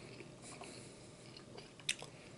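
Close-miked chewing of barbecue rib meat, with soft wet mouth sounds and one sharp click near the end.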